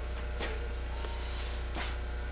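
Steady low electrical hum on the recording, with two short knocks, one about half a second in and one near the end.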